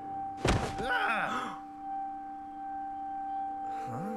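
A single heavy punch sound effect from an animated fight scene, about half a second in, followed by a brief vocal sound, over a held music note.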